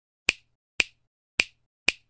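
Four crisp finger snaps about half a second apart, played as an intro sound effect.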